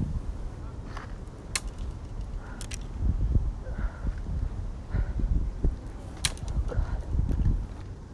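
Footsteps crunching through dry leaf litter, with irregular low thuds from a hand-held camera being jostled, heaviest from about three seconds in, and a few sharp clicks.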